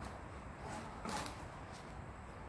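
A cardboard box rustling and scraping briefly on a tiled floor about a second in, as a dog pulls its head out of it, over a low steady background rumble.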